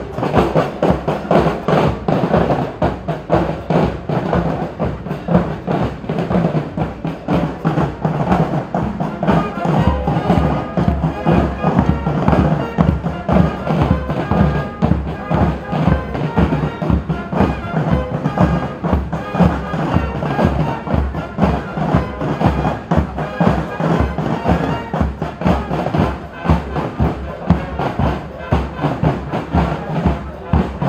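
Marching drum corps playing a steady drum beat, the strokes growing fuller about ten seconds in.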